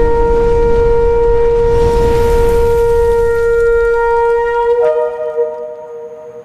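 A long, steady shofar blast over a low rumble. Its pitch lifts slightly about five seconds in, and then it fades.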